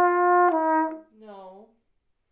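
Flugelhorn holding a long, lyrical note that steps down a tone about half a second in, with the phrase ending about a second in. A short, quiet vocal hum from the player follows, dipping and rising in pitch.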